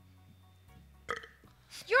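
A single short belch from one of the actors, about a second in.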